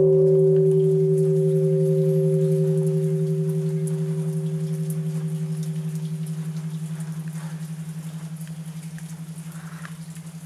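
Large bronze Japanese temple bell (bonshō), struck by a swinging wooden log just before, ringing on: a deep hum that slowly fades with a steady pulsing waver, while its higher tones die away over the first several seconds.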